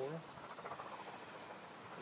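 The end of a voice in the first moment, then faint steady background noise with no distinct sound in it.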